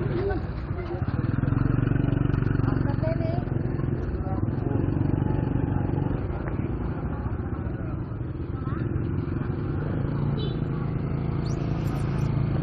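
Small motorbike engines running as they pass close by in a busy market street, with the chatter of a crowd of voices underneath.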